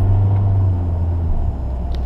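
Inside the cabin of a 2012 Volkswagen Jetta, its 2.0-litre four-cylinder turbodiesel pulls steadily under way in a manually held gear with road and tyre noise, a steady low drone that dips briefly about one and a half seconds in. This is the DSG adaptation drive in Tiptronic mode after a clutch pack replacement.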